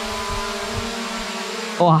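SJRC F11S Pro drone's brushless motors and propellers running with a steady, even-pitched buzzing hum as it hovers and turns indoors.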